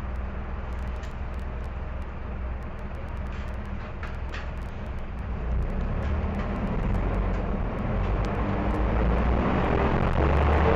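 The bus's Mercedes-Benz OM-904LA four-cylinder turbo-diesel engine, driving through its Allison automatic transmission, gives a steady low rumble that grows louder from about halfway through.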